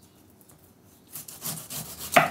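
Kitchen knife sawing into a whole pineapple on a wooden cutting board: a few short rasping strokes starting about a second in. The fruit is firm to cut, not butter-soft.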